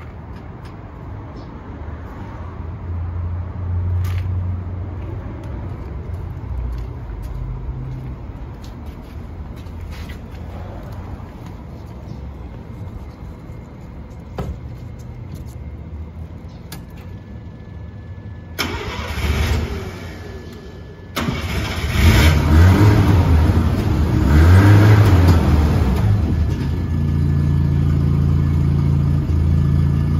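1979 Mazda RX-7's 12A twin-rotor rotary engine running cold, first a steady low idle heard at the twin tailpipes. Later it is blipped louder a few times, rising and falling in pitch, then settles into a steady, higher idle.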